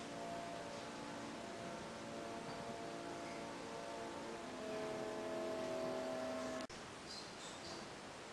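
Organ playing soft, sustained chords, each held steady before moving to the next. The music cuts off abruptly near the end, leaving quiet room sound with a few faint clicks.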